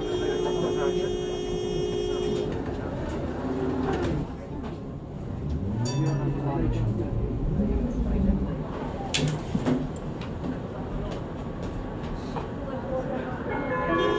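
Tatra T3M tram: a steady warning tone sounds while the folding doors close, then the tram pulls away with its thyristor-controlled traction motors whining up and down in pitch over the running noise, with a sharp clack partway through. Near the end the tone sounds again as the doors open at the next stop.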